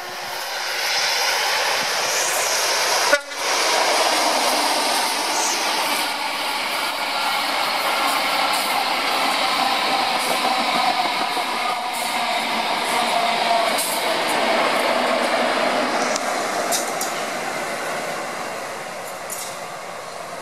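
Intercity 125 (HST) train passing at speed: the Class 43 power car's diesel engine running under power with a steady whine, then the coaches rolling by with continuous wheel noise. There is a sharp click about three seconds in, and a few short clicks later on.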